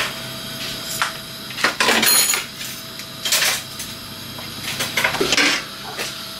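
Kitchen handling sounds: about five separate knocks, rustles and clatters, roughly one a second, as a block of raw beef mince is unpacked and put into a non-stick frying pan.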